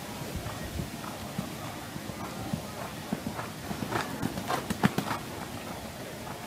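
Hoofbeats of a show-jumping horse on a sand arena, loudest about four to five seconds in as the horse comes close.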